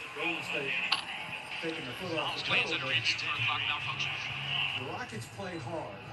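Indistinct speech, the commentary of a televised basketball game, with a steady hiss beneath it.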